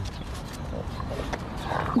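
A French bulldog straining at its leash toward a duck, making short low grunting noises, over a steady low rumble.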